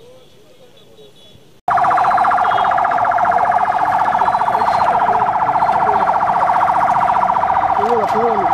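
Electronic siren of an official convoy's escort vehicle, a loud rapid warble that starts suddenly about one and a half seconds in and keeps going.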